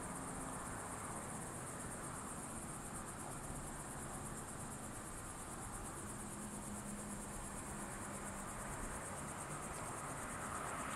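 Crickets trilling: a steady, very high, fast-pulsing chirr with no breaks, over a faint low rumble.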